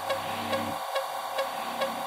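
Dubstep track in a stripped-back breakdown with the sub bass dropped out: soft sustained synth pads over a light ticking percussion at about five ticks a second, with low tones that fade away about a second in.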